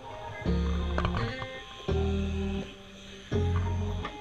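Background music: a guitar-led track over deep bass notes that change every second or so.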